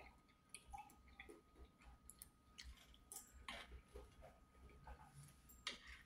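A person chewing a mouthful of shrimp fried rice, heard faintly as soft scattered mouth clicks and wet ticks, with a light tap near the end.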